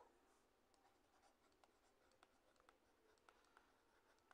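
Near silence: faint room tone with a dozen or so very faint, scattered ticks from a stylus writing on a pen tablet.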